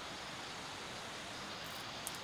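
Steady outdoor background hiss, even and unchanging, with a few faint high ticks near the end.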